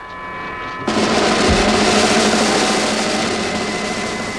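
Electronic sound effects from a 1960s science-fiction TV soundtrack: a steady chord of high electronic tones, joined about a second in by a loud hissing rush that slowly eases.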